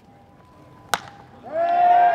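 A single sharp crack of a wooden bat meeting a pitched baseball, about a second in. Half a second later spectators' voices rise together in a brief shout that carries on and fades; this shout is the loudest sound.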